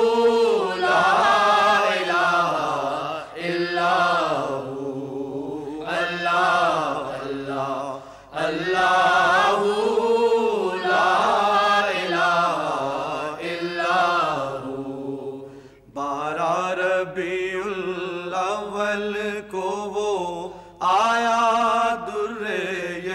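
Male voices chanting a naat, an Urdu devotional song in praise of the Prophet, in long drawn-out melodic phrases with short breaks for breath.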